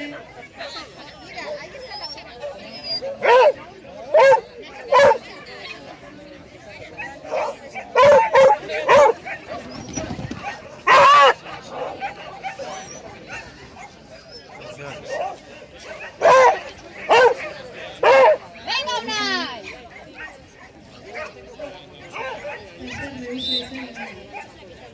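A dog barking loudly in short runs: three barks, three more, one longer bark, then three more, with gaps between the runs.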